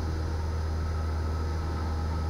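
Cessna 172's piston engine and propeller running at a steady cruise setting, a constant low drone as picked up through the cockpit intercom.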